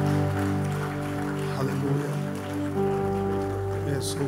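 Soft background worship music: held keyboard chords, shifting to new chords a couple of times.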